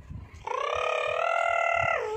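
A child's voice holding one long high-pitched note, starting about half a second in and lasting about a second and a half, then sliding down in pitch at the end.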